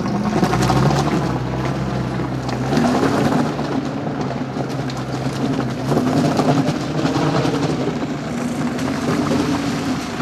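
An old Lada Zhiguli sedan's four-cylinder petrol engine pulling away under load up a rough, stony unpaved road, its pitch rising and falling several times as the driver works the throttle. The tyres crunch over the loose stones.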